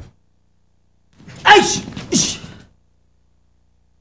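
A man shouting twice in quick succession, each shout short and falling in pitch, about a second and a half in, as a gun-threat-with-push attack is acted out live.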